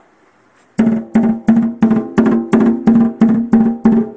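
Snare drum struck with a drumstick in a steady run of about ten strokes, roughly three a second, each with a short pitched ring of the head; the strokes begin about three-quarters of a second in and vary somewhat in strength.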